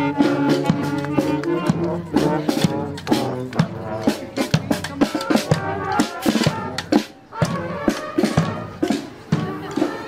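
Marching band playing a tune on the move: saxophones, clarinets and brass over drum beats. The drum strokes stand out more in the second half.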